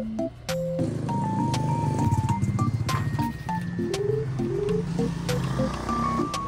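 Background music: a light tune with a stepping synth melody over a bass line and a steady beat.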